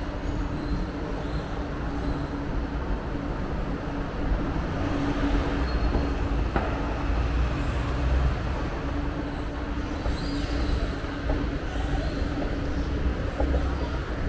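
Escalator running while being ridden downward: a steady mechanical hum over a low rumble.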